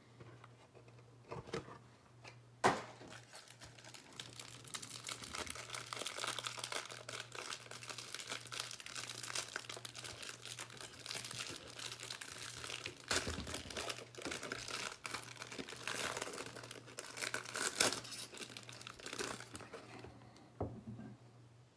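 Clear plastic wrapper of a trading card pack being torn open and crinkled by hand: continuous crackling from about four seconds in, louder around thirteen and seventeen seconds in. A single sharp knock comes about three seconds in.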